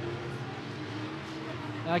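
Sport modified race cars' engines running laps on a dirt oval, heard as a steady background drone with a faint held hum.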